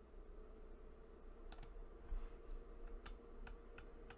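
Four faint, sharp computer mouse clicks, one about a second and a half in and three close together near the end, over a steady low electrical hum.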